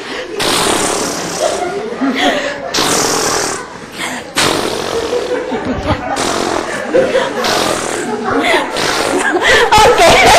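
Several people blowing raspberries (lip trills) at each other, a loud, ongoing spluttering noise mixed with laughter.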